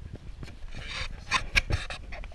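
Close rubbing and scraping noises. They grow in the second second into several short, sharp scrapes.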